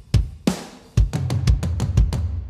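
Mixed drum track played back from a recording session: kick drum hitting about twice a second, with snare strokes between and a cymbal wash from about half a second in. The kick is heard plain, with its reversed early-reflection effect switched off.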